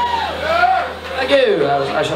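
A man's voice over the PA between songs, with pitch rising and falling, over a low steady amplifier hum.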